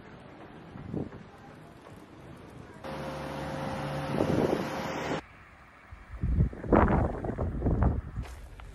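Outdoor background sound that changes abruptly twice between shots, then gusts of wind rumbling on the microphone in the last couple of seconds.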